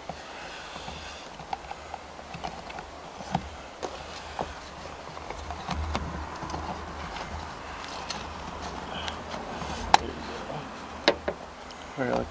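Small clicks and knocks from a recoil starter's metal housing and pulley being handled and pressed down against a plastic truck bedliner, with two sharper clicks near the end, over a low steady rumble.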